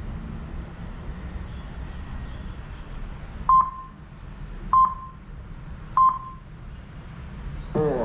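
Three short electronic beeps, evenly spaced about a second and a quarter apart, over a low steady hum.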